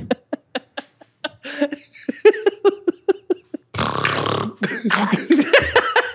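Two men laughing hard: rapid, breathy bursts of laughter with a louder rush of breath about four seconds in.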